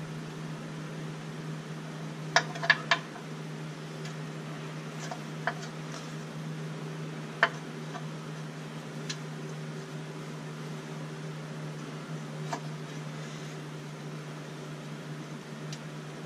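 Steady low hum of a fan or similar running machine, with a few light clicks and taps as the brake hard line and its bracket are bent and handled by hand, three of them close together about two seconds in.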